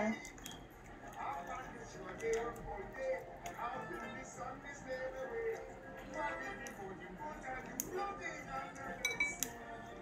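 Hands working slime in a bowl: light clinks and scattered clicks, with a few sharper clicks near the end, over faint background music.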